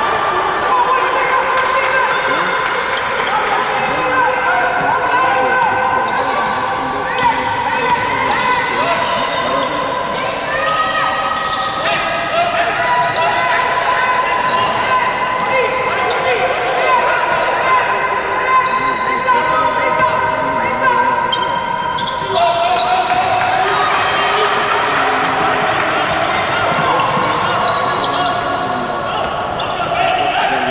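A basketball bouncing on a hardwood court, with players' and coaches' shouts echoing in a large, sparsely filled sports hall.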